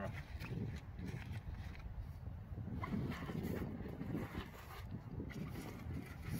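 Wind rumbling on the microphone, with faint rustling and pressing of a fabric blind around a van's wing mirror.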